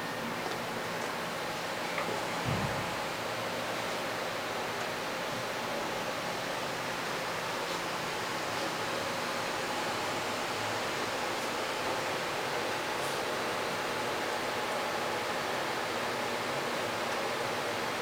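Steady room noise: an even hiss with a faint hum underneath, and a single low thump about two and a half seconds in.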